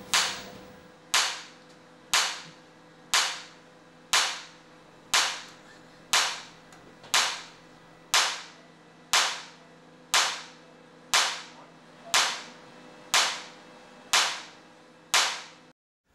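Extracorporeal shock wave lithotripter firing shock waves at a kidney stone to break it up, a sharp snap about once a second, sixteen in a row.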